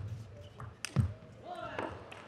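Celluloid-type table tennis ball being struck by rackets and bouncing on the table at the end of a rally: a few sharp clicks in the first second, the loudest about a second in. Voices follow in the second half, as the point ends.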